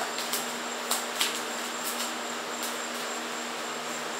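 A steady low hum with a faint high whine, over which come a few soft clicks and ticks of tarot cards being pulled from a hand-held deck.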